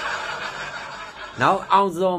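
A man laughing: a long breathy, hissing snicker, then pitched voiced sounds starting about a second and a half in.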